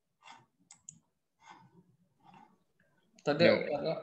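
A few faint, short clicks over a quiet line, then a man's voice begins near the end.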